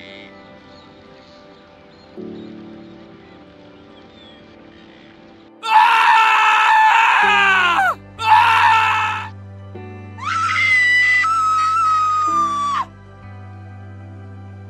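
Three loud screams over soft background music: a long scream that drops in pitch as it ends, a short second one, then a longer held scream.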